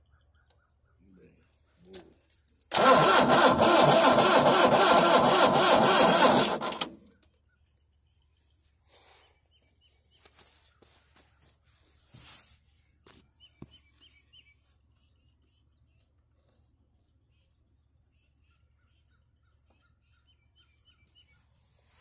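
Starter cranking a John Deere tractor engine for about four seconds with a rhythmic churn, then stopping without the engine firing. The engine cranks but won't start after running out of fuel, even with a new fuel filter and fuel pump.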